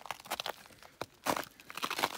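Footsteps crunching on dry, leaf-strewn ground: a few irregular crunchy steps.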